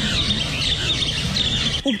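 Many birds chirping and calling at once, with a low rumble underneath.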